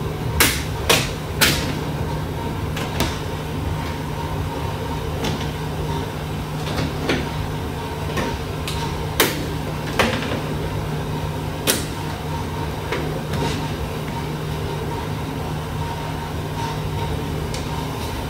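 Plastic push-type retaining clips on a car's plastic engine-bay cover being worked loose with a clip removal tool: sharp plastic clicks, a quick run of three about a second in, then scattered single ones. A steady low hum sits under them.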